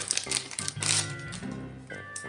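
Clear plastic wrapping crinkling and crackling in quick clicks as it is pulled off a deck of cardboard game cards, busiest in the first second, over steady background music.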